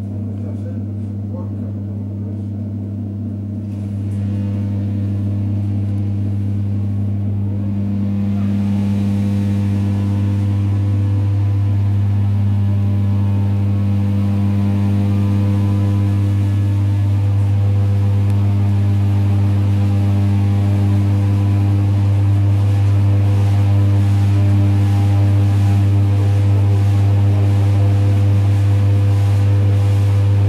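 Cabin sound of an ED9E electric multiple unit pulling away and gathering speed: a steady low electrical hum with overtones, growing gradually louder as running noise builds.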